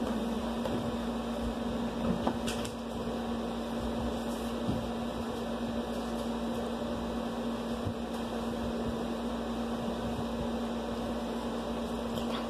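Steady hum of a running appliance motor, with one constant low tone under an even noise. There is a single light click a couple of seconds in.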